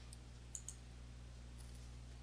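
Two faint computer mouse clicks in quick succession about half a second in, over a low steady hum.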